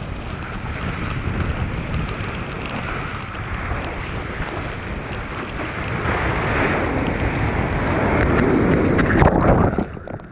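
Ocean water rushing and splashing around a mouth-mounted GoPro as a surfer paddles into and rides a breaking wave, with wind buffeting the microphone. The rush builds from about six seconds in, is loudest near the end, then drops away suddenly as whitewater swamps the camera.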